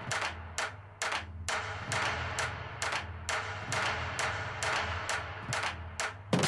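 Breakdown in an electronic dance track: the heavy kick and bass drop out, leaving a sparse run of sharp percussion hits, about three to four a second, over a quiet low bass pulse.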